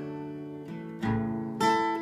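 Acoustic guitar strummed gently: a chord rings and fades, then fresh chords are struck about a second in and again a little after.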